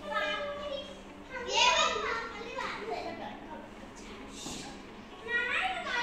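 Young children playing, their high-pitched voices calling out, loudest about a second and a half in and again near the end.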